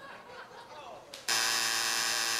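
Game-show buzzer: a loud, steady, harsh buzz that cuts in abruptly about a second and a quarter in, sounding time out because no contestant buzzed in to answer.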